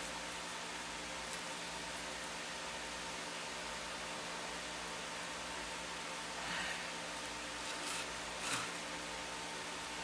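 Steady background hum and hiss, with a few faint knocks near the end from the wire armature and its wooden base being handled.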